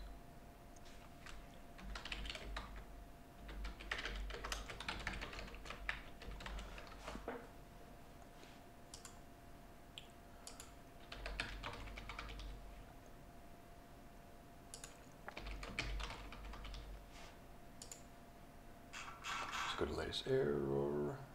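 Typing on a computer keyboard in four short bursts of rapid key clicks, with a few single clicks between them.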